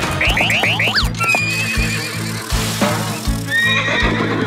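Cartoon horse neighing over upbeat background music with a steady beat. A quick run of five rising whistles sounds near the start.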